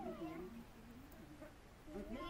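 Faint, rising-and-falling cries of a macaque, with voices faintly in the background.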